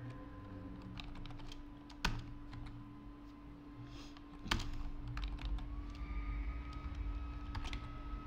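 Typing on a computer keyboard: keys tapped in short, irregular runs, with a couple of louder single key strikes. A steady low hum runs underneath.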